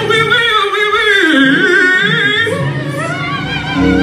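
Male gospel lead singer singing a long, wavering run through the PA over a live band. The band thins out in the middle and comes back in full near the end.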